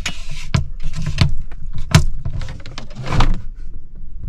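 Sharp plastic clicks and knocks from the lid of a truck cab's built-in fridge being handled, a few separate strikes with the loudest about two seconds in and a rustle near the end.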